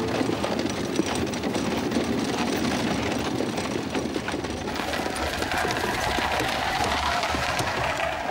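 Horse-drawn carriage pulled by a pair of horses over a snowy road: hooves, wheels and harness making a steady, continuous rattling clatter.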